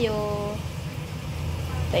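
The tail of a drawn-out word in a woman's voice, then a steady low hum with no other sound.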